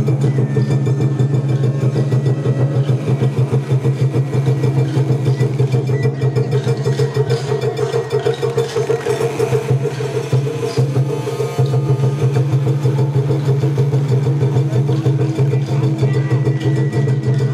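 Festival float hayashi: taiko drums beating a fast, continuous roll that pulses evenly, with a thin high steady tone over it during roughly the first half.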